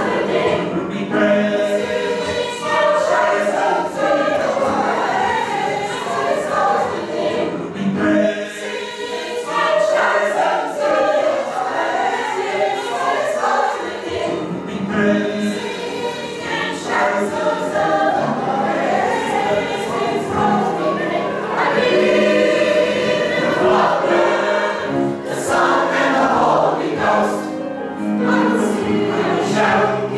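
Mixed choir of men's and women's voices singing a gospel song in full voice, in continuous phrases.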